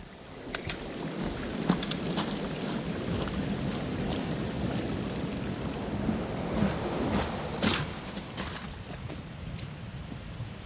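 Footsteps and the taps of trekking poles on a wet, slushy path, over a steady rushing noise, with scattered sharp clicks throughout.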